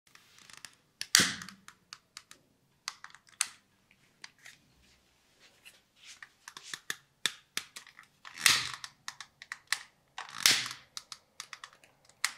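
Barber's scissors and small tools being handled, making a run of irregular sharp clicks and snips, with three louder, longer bursts of noise about a second in, at about eight and a half seconds and at about ten and a half seconds.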